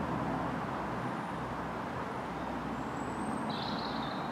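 Steady rumble of road traffic, with a few short bird chirps near the end.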